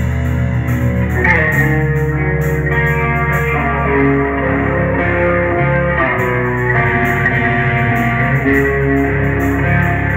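Live rock band playing an instrumental passage without vocals: an electric guitar plays a lead line of long held notes over steady bass and drums.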